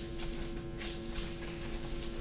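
Paper raffle slips rustling in soft bursts as hands stir and dig through them in a clear plastic drum, over a steady low electrical hum.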